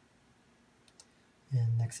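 Near-quiet room tone with two faint short clicks just under a second in, then a person's voice starts speaking near the end.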